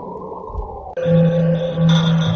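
Horror sound effect: a dark, low drone with a slowly gliding tone, then about halfway through a sudden, louder sustained chord of several steady tones.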